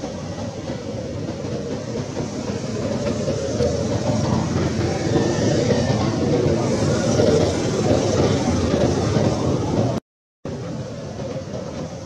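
Continuous rumbling background noise that swells louder through the middle, then cuts out completely for a moment near the end.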